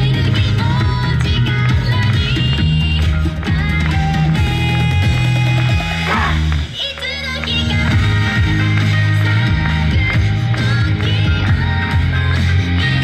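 Yosakoi dance music playing loud, with a heavy bass beat; it breaks off briefly about six seconds in, then comes back.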